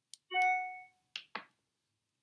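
A new-email notification chime on her device rings once: a single bright ding that fades within about a second. Two short clicks follow.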